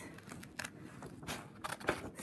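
Scissors cutting through a sheet of paper: a few short snips, with the paper rustling as it is held and turned.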